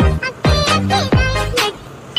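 Music with repeated deep bass hits that sweep sharply down in pitch, three of them in quick succession, with short high notes between them.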